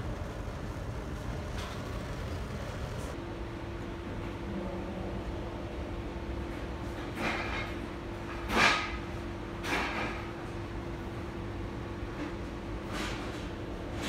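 Steady low rumble of kitchen background noise, with a steady hum that comes in about three seconds in. A few short noises cut across it in the middle and near the end, the loudest a little past halfway.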